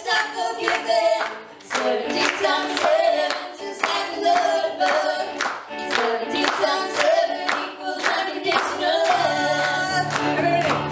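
Voices singing over steady hand clapping, about two claps a second, with little instrumental backing; deep bass notes come in near the end.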